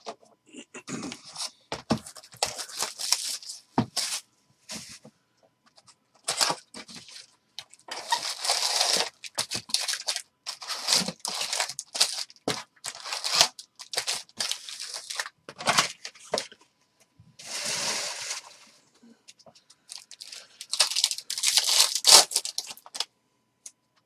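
Hands tearing open and crinkling the wrapping of a trading-card box and its foil packs, with cardboard and packs knocking on the table. The sound comes as a string of separate tearing and rustling bursts, each a second or two long, with short gaps and sharp knocks between them.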